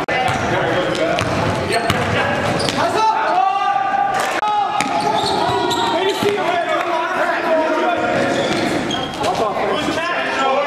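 Live basketball game sounds echoing in a gym: a basketball dribbled on the hardwood floor, sneakers squeaking, and players' voices.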